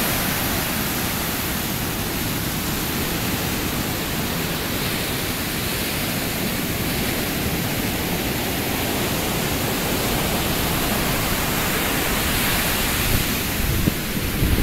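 Heavy ocean surf breaking on a beach: a steady, unbroken rush of noise.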